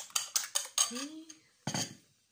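Eggs being beaten in a ceramic bowl: a metal utensil clicks rapidly against the bowl, about five strokes a second, stopping about a second in. A single loud knock near the end.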